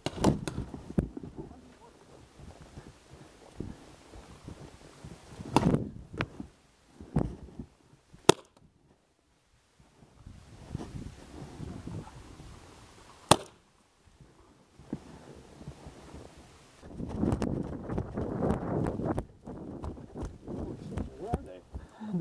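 Paintball pistol fire: single sharp cracks, the two loudest about eight and thirteen seconds in, with quieter noisy bursts in between.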